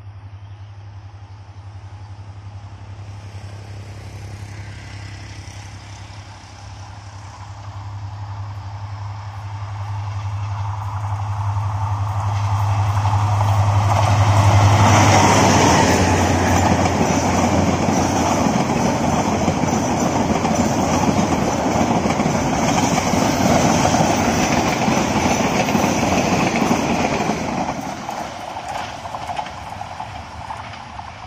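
Bangladesh Railway Class 2900 diesel-electric locomotive approaching with a steady low engine drone that grows louder, passing close about halfway through. The passenger coaches' wheels follow, running loudly over the rails, and the sound fades near the end as the train moves away.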